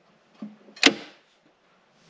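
A consumer-unit circuit breaker being switched on: a faint click just under half a second in, then one sharp snap a little later as it trips straight off again. The instant trip is the sign of a fault on the kitchen socket cable, which the owner takes for a short between live and earth.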